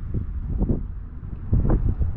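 Wind buffeting the microphone: a low, uneven rumble that swells in gusts, loudest near the end.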